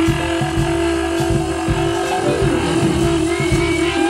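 Live band music led by a conch shell blown like a horn, holding one long steady note over drums and bass.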